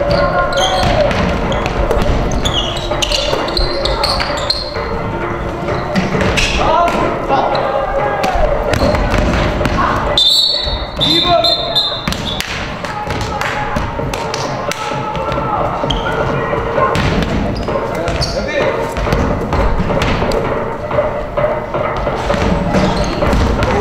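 Basketball game play in a gym: the ball bouncing on the hardwood floor, sneakers squeaking and players calling out, echoing in the hall. About ten seconds in, a referee's whistle blows.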